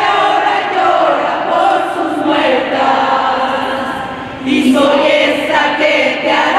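A group of women singing a song together, with long held notes; the singing dips briefly and a new phrase starts about four and a half seconds in.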